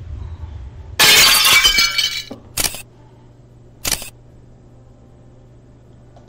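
Glass-shattering sound effect: one loud crash about a second in that lasts about a second, followed by two short sharp hits about a second apart.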